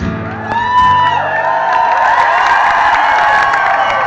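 Live concert audience cheering and whooping at the end of a song, starting about half a second in. The last guitar chord is still ringing under the cheers for the first second or so, then fades out.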